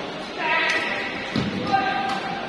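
Badminton doubles rally: a player's shout about half a second in, a thud of feet landing on the court, and a sharp racket hit on the shuttlecock near the end, with another call after it.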